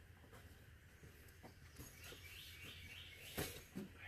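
Faint bird call in the second half: a quick run of about five repeated chirps. A sharp click and a softer thump follow near the end.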